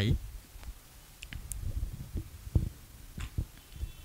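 Handling noise from a microphone being shifted: scattered low thumps, the strongest about two and a half seconds in, with a few faint clicks.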